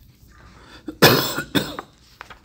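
A person coughing twice about a second in, the second cough shorter than the first.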